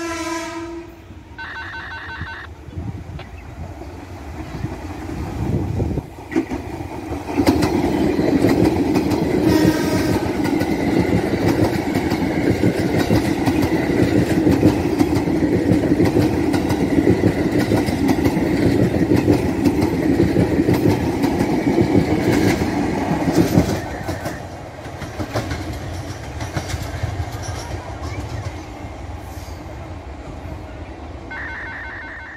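A KRL Commuter Line electric multiple unit sounds its horn in short blasts at the start, and again about ten seconds in. It then passes close by, its wheels clattering on the rails, loudest for about a quarter of a minute before fading away.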